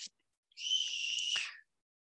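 A high, steady whistle-like tone lasting about a second, with a fainter higher tone above it, breaking off abruptly.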